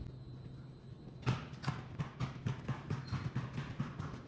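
Quick footsteps on a hard floor, about three to four steps a second, starting about a second in.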